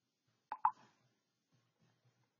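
A short double pop: two sharp clicks about a tenth of a second apart, about half a second in, with little else heard.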